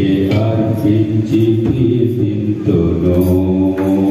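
Amplified singing of a Telugu Christian worship song in long, chant-like held notes, with brief breaks between phrases.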